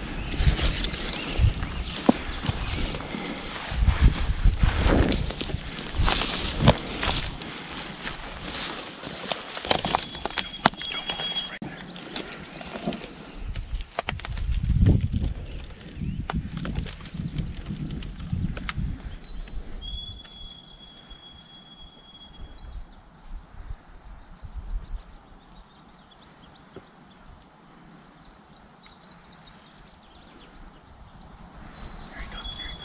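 Footsteps crunching and snapping through dry grass and downed branches, irregular and loud, thinning out after about eighteen seconds. In the quieter stretch a few thin high whistled notes step down in pitch.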